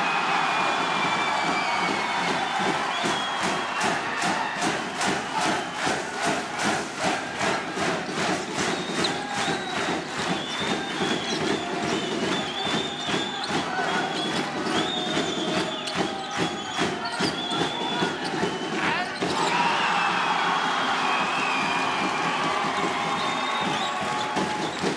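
Basketball arena sound: a packed crowd with a steady run of sharp beats, about two a second, and short sneaker squeaks on the court. The crowd swells at the start and again about 19 seconds in.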